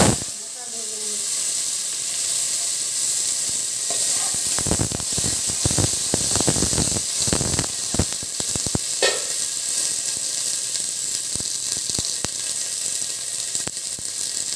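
Green peas tipped into hot oil with fenugreek seeds, sizzling steadily. A metal spoon scrapes and clicks against the pot as they are stirred, mostly from about four to nine seconds in.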